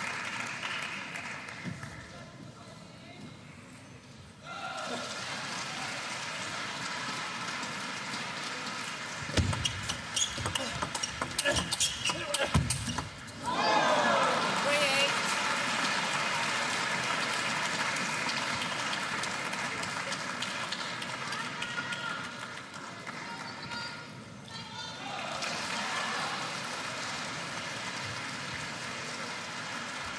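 Table tennis rally: the celluloid ball clicks off the bats and table in quick succession a little over nine seconds in. After the last stroke the hall crowd cheers and shouts loudly, dies down briefly about ten seconds later, then rises again.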